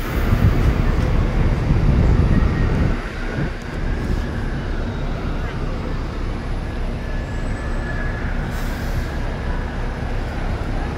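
Bus engine and road rumble heard from on board a moving bus, heavier for the first three seconds and then dropping to a steadier, lower rumble.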